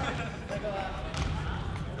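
Voices in a gymnasium with a ball bouncing on the wooden floor, over low rumbling from a handheld camera being swung about.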